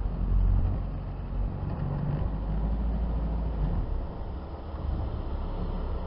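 Vehicle engine running with a steady low rumble, heard from a camera mounted on the bonnet. It swells briefly near the start and dips slightly later on.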